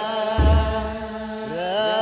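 Ethiopian Orthodox aqwaqwam liturgical chant: a choir of voices holding long, slowly gliding chanted notes. About half a second in, one deep drum stroke lands together with a bright rattling accent.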